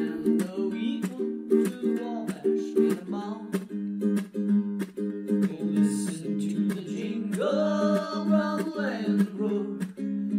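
Ukulele strumming chords in a steady rhythm, an instrumental break in a country song. Near the end a long held note rises over the strumming for about a second and a half.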